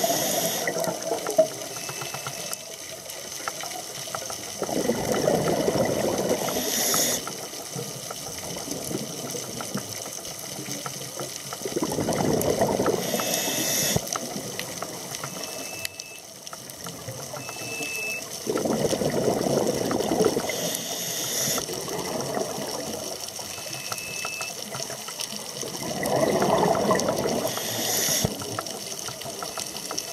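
A scuba diver breathing through a regulator underwater: a burst of exhaled bubbles rumbling for about two seconds every six to seven seconds, each ending in a short hiss.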